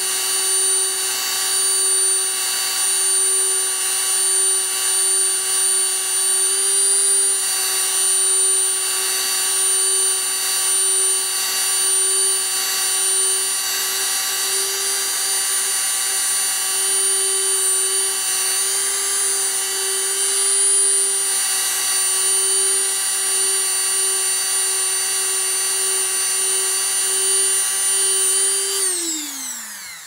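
Handheld rotary tool with a buffing wheel running at steady high speed while polishing guitar frets, a constant whine. Near the end it is switched off and the whine falls in pitch as the tool spins down.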